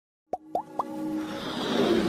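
Intro sound effects: three quick rising plops, then a swelling whoosh over a building music bed.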